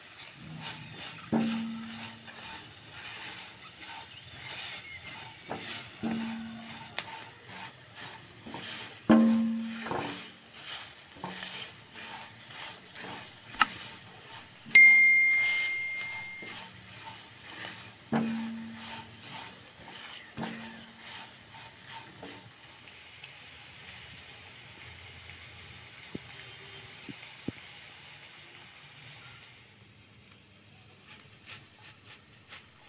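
Spiced green chillies sizzling in oil in a kadai while a spatula stirs them, knocking against the pan about seven times with a short ringing after each, loudest about 9 and 15 seconds in. About two-thirds of the way through the sizzle gives way to a fainter, duller hiss.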